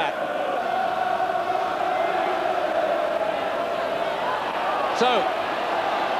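Football crowd singing and chanting in celebration of a goal: a steady mass of voices holding a sustained note.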